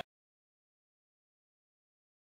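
Complete silence: the sound track is blank.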